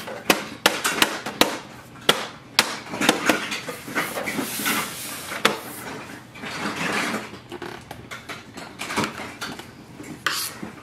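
Plastic clicks and knocks from the side cover of an Epson EcoTank ET-3830 printer being pressed and slid back into place over the maintenance box. A run of irregular sharp clicks, with a stretch of rubbing around the middle.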